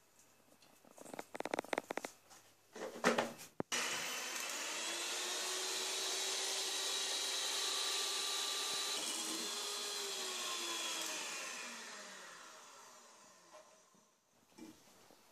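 Electric hand mixer whisking egg whites in a stainless steel bowl, beating them to stiff peaks. It starts suddenly about four seconds in, runs steadily, and fades away near the end. Before it comes a scatter of light clicks and knocks.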